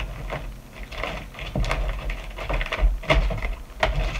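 Plastic-bagged packs of jewelry findings being shuffled and set down on a tabletop: irregular crinkles, clicks and soft thumps.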